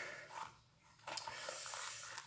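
Handling noise from a Vibram FiveFingers toe shoe being pulled inside out: a soft rustling and rubbing of the fabric upper and rubber sole that starts with a click about a second in. Just before it there is a short, effortful grunt.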